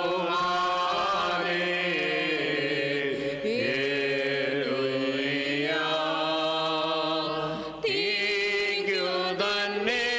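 Orthodox liturgical chant sung in long held notes that slide between pitches, with short breaks for breath about three and a half and eight seconds in.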